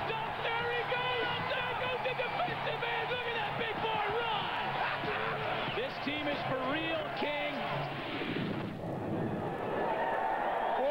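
Voices shouting and talking over a steady noisy background, with no single clear speaker.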